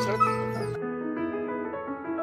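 Soft piano music with long held notes. In the first second a dog whimpers briefly over outdoor background noise, which then cuts off abruptly, leaving only the piano.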